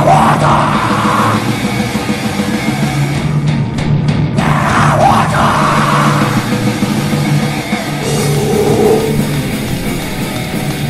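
Live grindcore recording: heavily distorted guitars, bass and drums playing without a break, with harsh shouted vocals standing out in two bursts, one at the start and one about halfway through.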